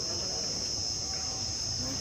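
A steady high-pitched chorus of crickets, with faint voices underneath.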